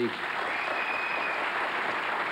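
Studio audience applauding steadily, with a thin high tone briefly over the clapping near the start.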